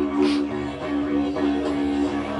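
Didgeridoo droning steadily, its overtones shifting slightly every fraction of a second.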